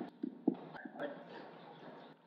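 Footsteps of people walking on a hard floor, with a few heavier steps in the first half-second, then softer shuffling.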